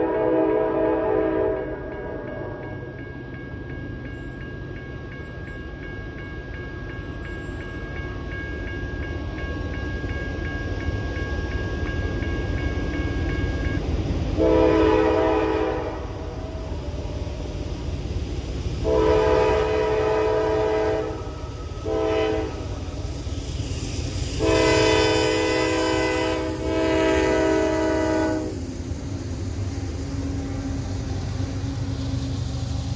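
Nathan K5LA five-chime air horn on a CSX AC44CW locomotive sounding: the end of one blast in the first couple of seconds, then after a long pause the grade-crossing signal of two long blasts, one short and a final long one. Under it runs the steady low rumble of the train.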